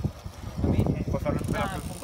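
Brief voices speaking over a low rumble of wind or handling noise on the microphone.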